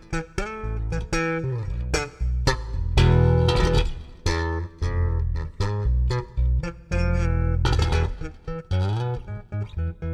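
Electric bass guitar playing a tango intro alone, a plucked melody of single notes and chords with short breaks between phrases.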